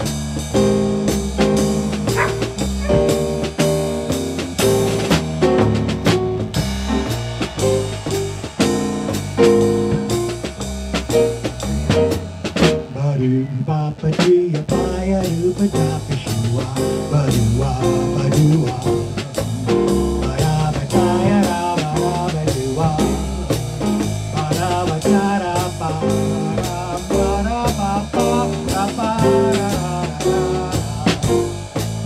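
A small jazz combo playing a 12-bar blues: digital piano, electric bass, drum kit and hand percussion, with a steady drum beat throughout.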